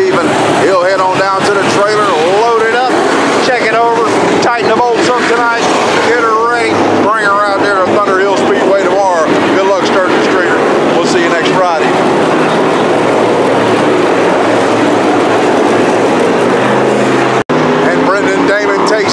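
Dirt-track SportMod race cars' V8 engines running at slow caution pace, with people's voices over them for the first two-thirds. Near the end one car's engine grows louder and rises in pitch as it comes up close.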